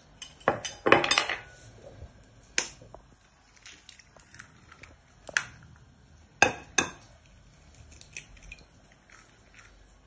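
Eggs being cracked against the rim of a glass bowl: a string of sharp taps and clinks of shell on glass, the strongest cluster about a second in and a quick pair of taps near 6.5 seconds, with fainter ticks of shell and bowl between.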